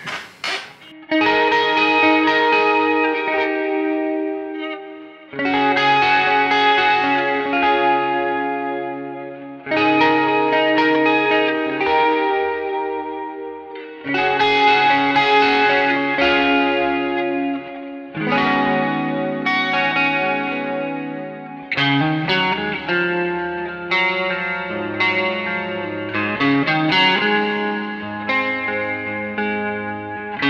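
Electric guitar played through an amp: slow chords, each struck about four seconds apart and left to ring out and fade. From about two-thirds of the way through, it moves into busier playing with more notes.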